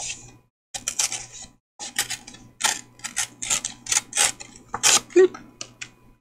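Paper and card pieces being handled and shuffled by hand: a run of short, crisp rustles and crinkles, the loudest about five seconds in.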